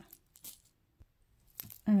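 Costume jewelry being handled: a few light metallic clicks and clinks, scattered and irregular.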